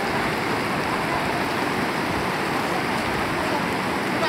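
Rushing mountain river, white water pouring over boulders and rapids in a steady, unbroken wash.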